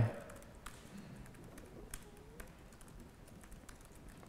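Faint, irregular keystrokes on a computer keyboard as code is typed.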